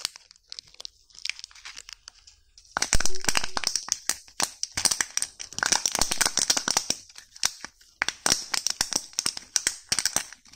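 Plastic candy packaging crinkling and crackling under fingers. Sparse and soft at first, then a dense, loud run of crackles from about three seconds in, with a short break near the end.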